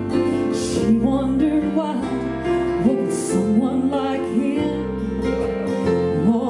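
A woman singing a slow southern gospel song, accompanied by acoustic guitar.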